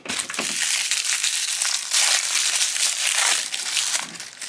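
Crinkly wrapper around a small toy being peeled open and crumpled by hand: a dense, continuous crackle, loudest about halfway through.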